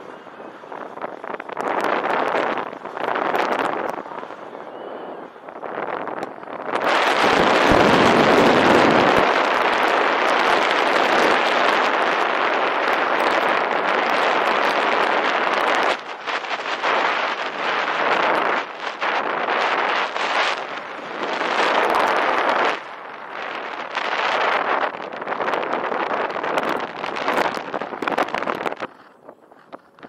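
Airflow rushing over the camera microphone of a paraglider in flight: wind noise that swells and fades in gusts, loudest from about seven seconds in to about sixteen seconds. It drops away just before the end.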